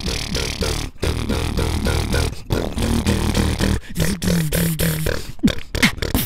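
Two beatboxers performing together into handheld microphones: a fast, steady beat of mouth-made drum strokes over a low bass drone. About four seconds in, four short low notes sound in a row.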